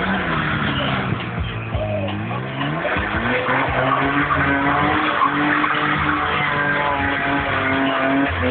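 BMW E30 with a 2.7-litre eta straight-six drifting on tarmac: the engine revs climb about two seconds in and are then held high while the rear tyres squeal and skid.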